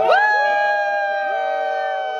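A group of people singing one long held note together; the voices slide up into it at the start and then hold it steady.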